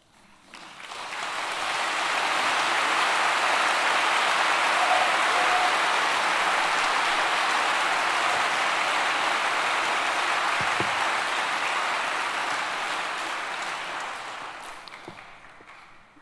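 Audience applauding. The applause starts about half a second in, builds within a couple of seconds, holds steady, and dies away over the last two seconds.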